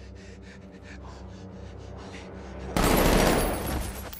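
Quick, heavy breaths, then about three seconds in a sudden loud burst of gunfire that lasts about a second.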